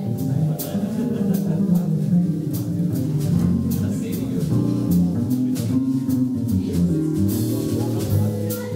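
A live jazz trio plays a jazz waltz: vibraphone struck with four mallets, plucked upright bass and drums with light cymbal strokes.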